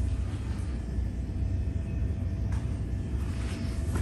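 Small 12-volt bilge pump motor running steadily: a low hum with a faint steady higher tone.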